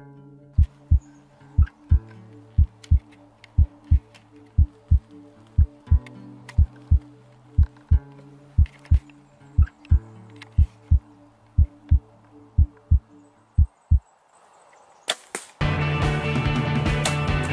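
Heartbeat sound effect: a low double beat about once a second over a steady low musical drone, stopping about fourteen seconds in. Near the end come a couple of sharp clicks, then loud music.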